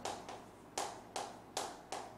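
Chalk writing on a chalkboard: four short, sharp chalk strokes about half a second apart, starting most of a second in.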